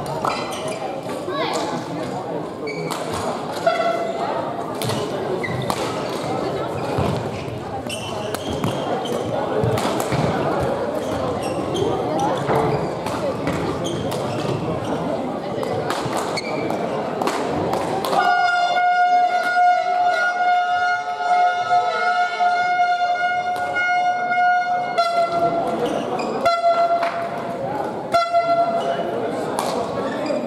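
Echoing sports-hall ambience of chattering voices with sharp knocks of shuttlecock hits from play on the courts. About eighteen seconds in, a loud, steady horn-like tone sounds for about seven seconds, then comes back in three short blasts near the end.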